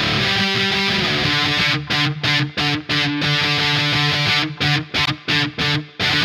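Electric guitar played through distortion: a held chord rings out first, then a choppy strummed pattern of chords stopped short again and again by muted gaps, and a chord rings out again near the end.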